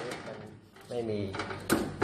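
A man speaks a short phrase, with a sharp click or two from a part being handled over the cabinet.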